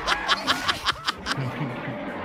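Several people laughing together, a quick run of short chuckles and snickers that trails off near the end.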